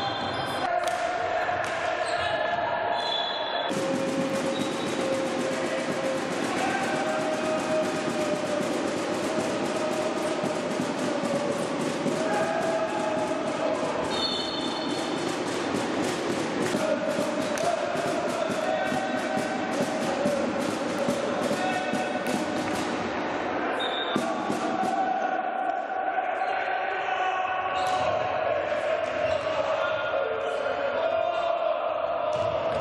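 Indoor field hockey play in a sports hall: many quick knocks of sticks and ball on the wooden court, thickest through the middle of the stretch, over held voices and chanting from the stands in a reverberant hall.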